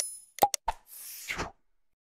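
Sound effects of an animated subscribe-button end screen: a brief high ringing chime at the start, then a few quick pops and clicks, then a whoosh lasting about half a second, starting about a second in.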